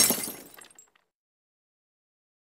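A shattering crash sound effect, the tail of it fading away within the first second.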